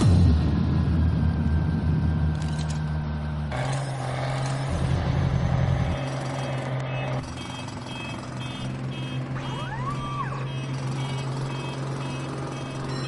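Breakdown in a hard tekno track: the pounding kick drum drops out, leaving held bass notes that shift pitch a few times. From about halfway, a steady run of short high beeps like a truck's reversing alarm repeats a few times a second, with a brief rising-and-falling whistle-like sweep near the end.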